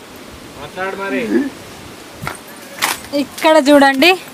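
Short bursts of people talking: a voice about a second in, and a louder, higher-pitched voice near the end. A couple of sharp clicks come between them.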